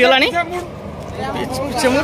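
Men's voices calling out, over a low steady rumble from an approaching train.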